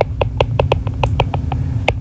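Stylus tip tapping on a tablet's glass screen during handwriting: a quick, irregular series of sharp clicks, about seven a second, over a steady low hum.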